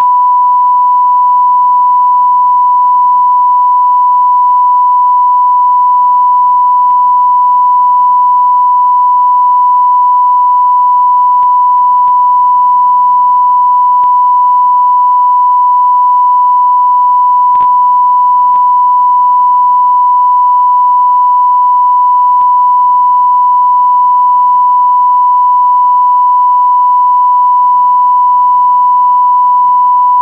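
Steady 1 kHz line-up tone played with SMPTE colour bars at the head of a videotape: one loud, unbroken pure tone at constant level.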